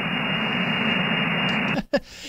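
CB radio receiver static: a steady hiss from the received 27 MHz signal after the distant station stops talking. Near the end it cuts off abruptly with a brief click as the local station takes over the channel.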